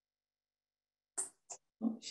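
Dead silence, then about a second in three brief bursts of a woman's breath and a murmured voiced fragment, the last and loudest near the end.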